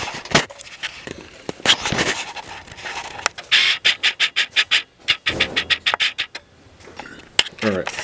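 Camera handling noise: shirt fabric rubbing and scraping against the microphone, with knocks and a quick run of rustling strokes in the middle.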